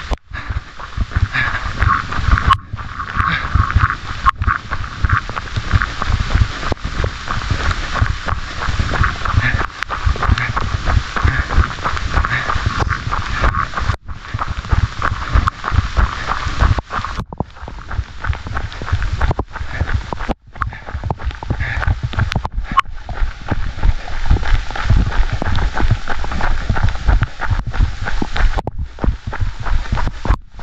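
Rain and wind on a wet camera microphone during a hard run: a steady, heavy rumble with crackling patter over it, the sound cutting out briefly several times.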